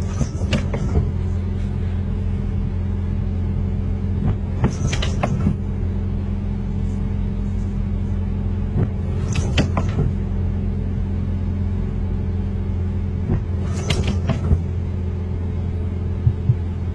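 Windscreen wipers on an intermittent setting, sweeping across wet glass about every four and a half seconds; each pass is a short scrape of rubber blades with a couple of clicks. Under them runs the steady low hum of the car, heard from inside the cabin.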